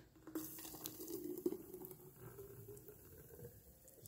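Thick peach smoothie poured from a blender pitcher into a plastic bottle: a faint, steady liquid stream.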